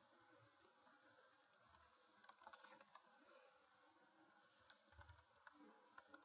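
Near silence with faint, scattered computer keyboard clicks in a few short clusters, as a word is typed.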